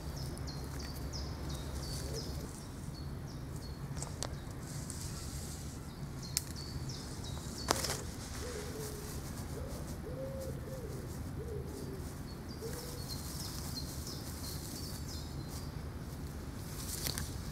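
Birds calling: one bird repeats short high notes that drop in pitch, and a lower, wavering call comes in the middle. A few sharp snaps from dry twigs being laid into a fire pit, with a steady low rumble underneath.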